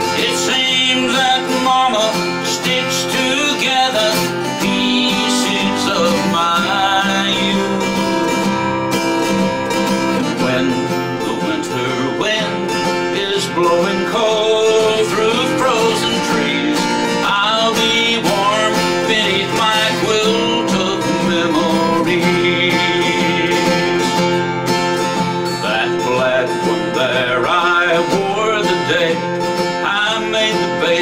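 A man singing a slow country song to his own acoustic guitar accompaniment.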